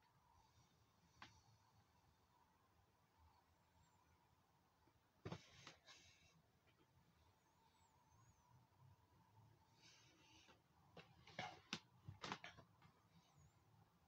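Near silence: room tone with the machine powered down, broken by a few faint short noises about five seconds in and again near the end.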